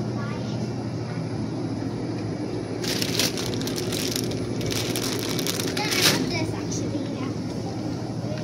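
Plastic packaging crinkling close to the microphone: a run of crackling from about three seconds in to about six seconds in, over a steady low hum.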